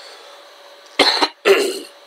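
A person coughs twice, in short bursts about half a second apart, starting about a second in.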